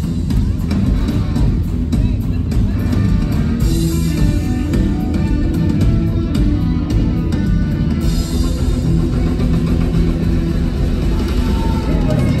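Loud live rock music from a stage band with a drum kit and guitar, played over the show's sound system.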